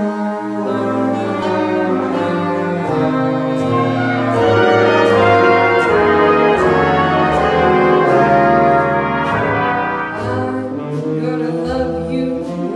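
Jazz big band playing an instrumental introduction: the brass section holds full sustained chords over moving bass notes, with a steady ticking beat above.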